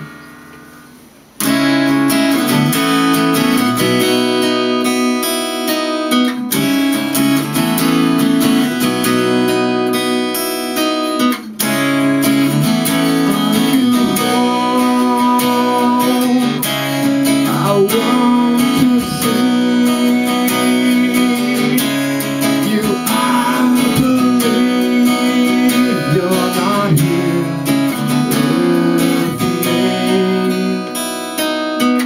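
Acoustic guitar being strummed in a steady chord pattern. It starts about a second and a half in, after a short quiet moment.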